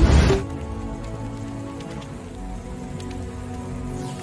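TV channel ident music: a loud sweeping hit right at the start, then steady held chords.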